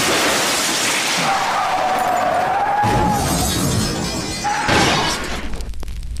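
Loud crashing sound effect: a long rush of noise with a wavering tone through the middle, and a second burst about four and a half seconds in, before it fades.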